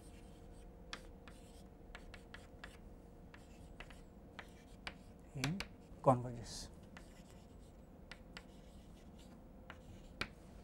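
Chalk writing on a blackboard: a scatter of short taps and scratches as the chalk strikes and drags across the board.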